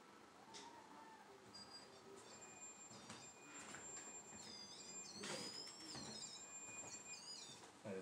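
A REM pod's electronic alarm going off faintly: thin high-pitched tones that hold steady, then warble and slide up and down in pitch for a few seconds. It is set off by a person handling the device, not by anything unexplained.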